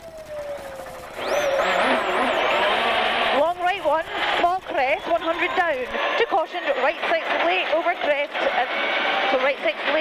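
Ford Focus WRC's turbocharged four-cylinder rally engine launching from the stage start about a second in, then running at full throttle, its revs rising and dropping as it changes up through the gears, with tyres on loose gravel.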